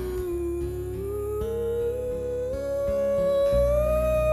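A man singing one long wordless note that climbs gradually in pitch, over acoustic guitar accompaniment.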